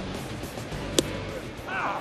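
A pitched baseball smacking into the catcher's mitt with one sharp pop about a second in, the called third strike, over the steady noise of a packed ballpark crowd.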